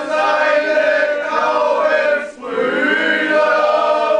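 A group of men singing a song together in unison, in two long sung phrases with a short break for breath about two and a half seconds in.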